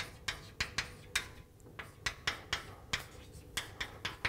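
Chalk writing on a blackboard: an irregular run of sharp taps and short strokes as letters go up, about three or four a second.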